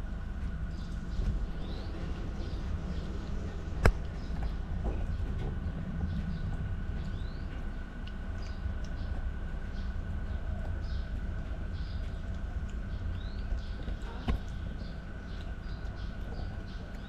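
Steady low background rumble with a faint steady whine, and small birds chirping faintly throughout. Two sharp clicks stand out, one about four seconds in and one near the end.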